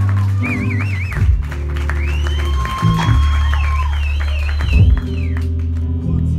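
A live band playing: electric bass holding long low notes that change every second or two, under electric guitar, with a high wavering tone over the top.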